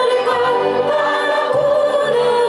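Two women singing together into microphones in long held notes over a low instrumental accompaniment.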